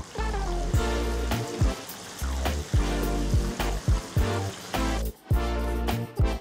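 Upbeat background music with a steady beat and bass, over the fizz of chicken wings deep-frying in bubbling oil.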